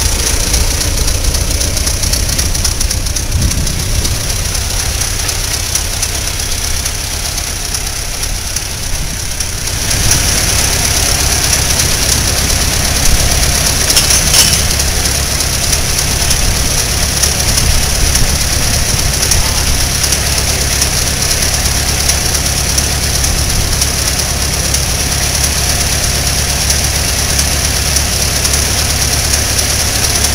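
1915 Metz touring car engine idling steadily while the car stands parked, growing slightly louder about ten seconds in.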